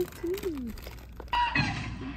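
A short vocal sound falling in pitch, then a person laughing, over faint film soundtrack music.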